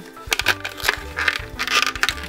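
Clear plastic blister packaging crinkling and crackling as it is handled, with a few loud crackles near the middle and end, over background music.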